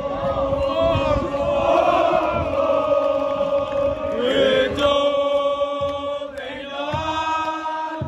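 A group of football supporters singing a chant together in long held notes, with a short break in the singing about halfway through.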